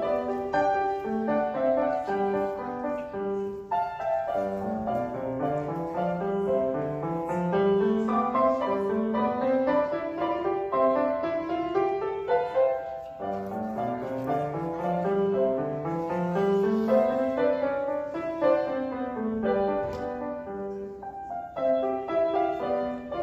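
Solo grand piano playing a classical piece, with repeated rising runs of notes in the lower register through the middle of the passage.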